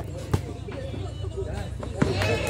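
A single sharp knock of a volleyball being bounced or struck, about a third of a second in, over faint crowd murmur and a steady low hum.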